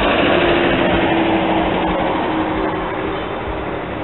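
A motor vehicle's engine and road noise going by, loudest at the start and fading steadily, with a steady engine tone that dies away near the end.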